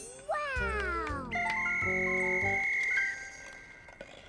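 Cartoon underscore: a pitch slides smoothly downward about a third of a second in, then a long high note is held for nearly two seconds over soft sustained musical notes and a low bass.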